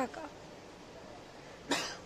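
Quiet room tone between speech, broken near the end by one short cough.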